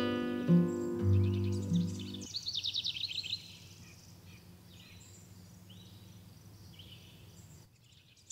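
Acoustic guitar music rings out and ends about two seconds in. A bird then gives a quick high trill of rapid chirps lasting about a second, followed by faint scattered bird chirps over a low hiss.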